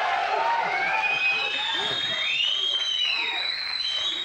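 Studio audience laughing and whooping, with high whistles over the crowd noise, one of them rising and falling in the second half.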